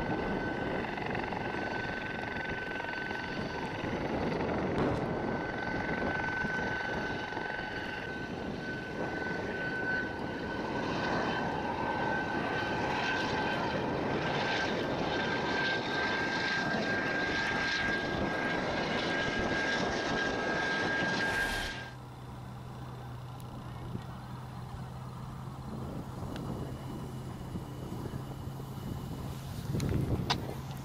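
Light military helicopter, a Gazelle, flying low: its turbine whines at one steady high pitch over a dense rotor and engine rumble. About 22 seconds in the sound cuts off suddenly, leaving a quieter low steady hum.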